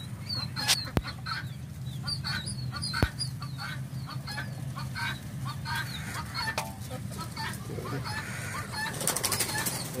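A flock of young pheasants peeping and chirping, many short calls overlapping, over a steady low hum. Two sharp knocks come early, and a brief burst of rustling near the end.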